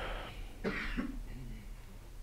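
A person clearing their throat: a short, quiet rasp about two-thirds of a second in, following the tail of a breathy rush at the start.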